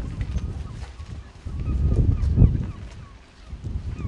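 Wind rumbling on the microphone, swelling about one and a half seconds in and peaking just before the midpoint of the second half, with faint high wavering calls over it.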